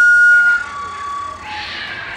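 A long folk flute playing a slow line: a high note held, dropping about half a second in to a lower held note, then a brief lower note, followed by a soft breathy rush near the end.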